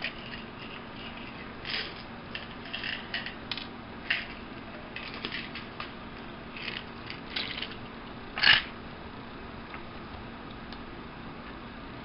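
Plastic pill bottles being handled: a cap twisted and clicked, and tablets rattling inside. Scattered short clicks and rattles run through the first half, with one louder, longer rattle a little past the middle.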